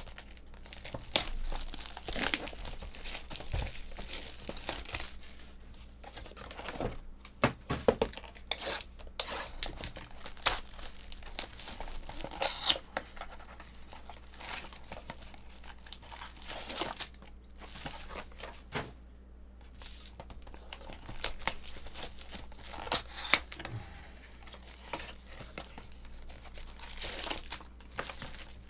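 Plastic shrink wrap being torn and crinkled off a cardboard box of trading cards, and the box flap opened: irregular crinkling and tearing with sharp crackles scattered throughout.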